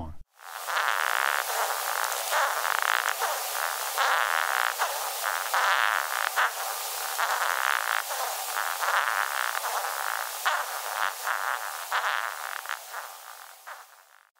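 Recorded courtship song of a male Japanese rhinoceros beetle: a rapid train of short rasping pulses in uneven bursts, fading out near the end. The researcher thinks it is stridulation, a ridged washboard on the abdomen rubbed against the hard wing covers, like a cricket's rasp and file.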